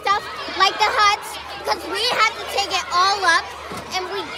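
A child speaking, high-pitched and continuous.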